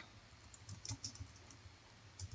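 Faint typing on a computer keyboard: a handful of scattered keystrokes, most of them in the first half.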